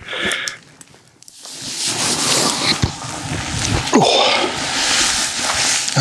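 Close, continuous rustling and handling noise as a person moves about and fits a camera onto a tripod. It starts after a brief quiet about a second and a half in.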